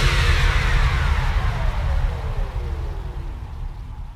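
Closing moments of a trance track: a synthesized sweep falls steadily in pitch over a low drone as the music fades out.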